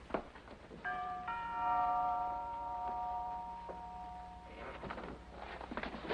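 Two-note door chime, a 'ding-dong', rings about a second in, its tones slowly dying away over the next few seconds. A short click comes just before it, and faint rustling follows near the end.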